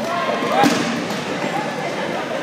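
Players' voices and shouts across a gymnasium, with a single sharp smack of a dodgeball hitting the floor or a player a little over half a second in.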